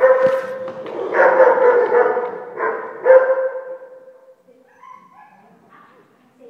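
A dog whining in three long, drawn-out cries, dying away about four seconds in.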